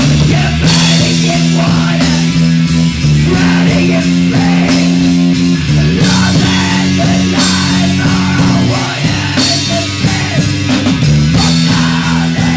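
Punk band playing live and loud: distorted electric guitars and bass holding heavy sustained chords that change every few seconds, over a drum kit with crashing cymbals, and a singer screaming into the microphone.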